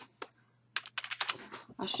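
Keys tapped on a computer keyboard: a single click near the start, then a quick run of key clicks through the second half as text is typed.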